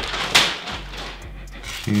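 Clear plastic garment bag rustling briefly as it is pulled off and tossed aside, with one sharp knock about a third of a second in.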